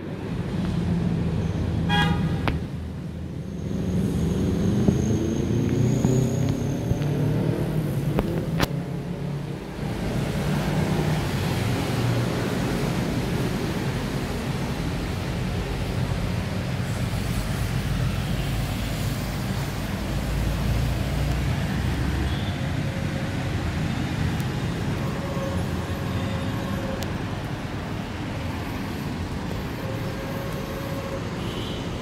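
Vehicle engine and road noise heard from inside the vehicle as it drives. The engine pitch rises as it speeds up a few seconds in, and a short beep sounds about two seconds in.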